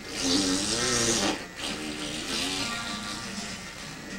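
A long comic fart sound that wavers in pitch, loud for the first second and a half, then trailing on more quietly: Santa soiling himself after drinking spoiled milk.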